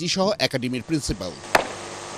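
A voice speaking for about the first second, then a single sharp knock about one and a half seconds in, over a steady background hiss.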